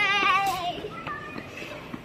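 A young child's high-pitched voice in a long wavering call or sung note, sliding down in pitch and stopping less than a second in, followed by quieter background with a few light clicks.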